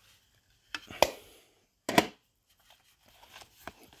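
Hinged clear hard-plastic baseball card box being handled open: two sharp plastic clacks about a second apart, the first led by a smaller click. Then a light rustle as the stack of cards slides out of the box.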